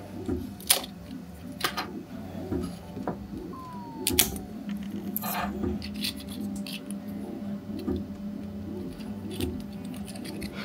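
Clicks and taps of a 3D-printed plastic part as it is lifted off the printer's print bed and handled, under background music with a soft, steady beat.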